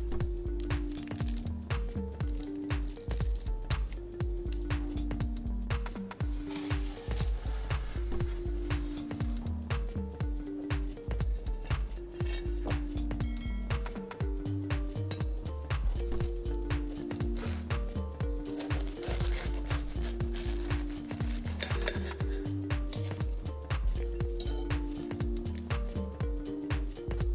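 Background music with a steady beat, a bass line and a short repeating melody.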